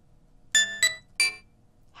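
Soundation's default 'Simple' software-instrument synth playing three short high-pitched notes, about a third of a second apart, each dying away quickly. The virtual keyboard is transposed to octave 8, near the top of its range.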